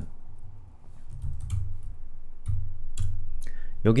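A few light, scattered computer mouse clicks with soft low thumps underneath, before a voice comes back in near the end.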